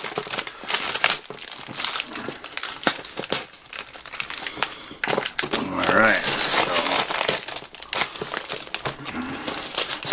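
Plastic postal wrapping crinkling and tearing as it is pulled off a package by hand, with many sharp crackles.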